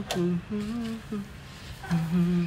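A man humming a few short, level-pitched notes, with a brief click at the very start.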